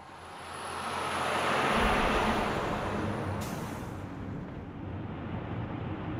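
A rush of wind and road-traffic noise swells up over about two seconds and then holds steady, with a low rumble coming in just under two seconds in.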